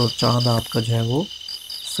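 Crickets chirping at night in a steady, evenly pulsing high trill, with a voice speaking over the first half.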